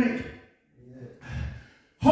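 A man's voice trails off in the first half-second, then two short, soft breaths or sighs sound close to a handheld microphone.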